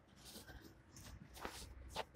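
Faint shuffling with a few light clicks and taps, the sharpest click near the end.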